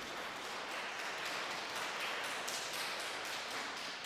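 Congregation applauding in a large church: a steady patter of many hands clapping, easing off near the end.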